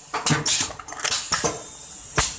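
Four side seal sachet packing machine running, with a series of sharp metallic clacks, about six in two seconds and unevenly spaced, over a steady high hiss.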